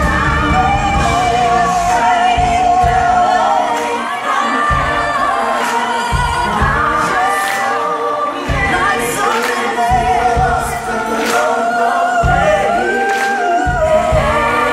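Live pop ballad with several voices singing together over a band, the sung lines held long with a wavering vibrato and irregular low bass hits beneath, heard through a phone recording in a large hall.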